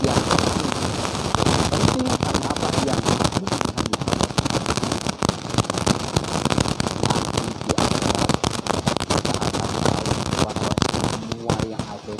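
Loud, dense crackling noise made of many small irregular clicks, starting abruptly and stopping about a second before the end.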